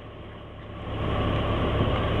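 Large coach bus's engine running close by, a steady low rumble that grows louder from about half a second in.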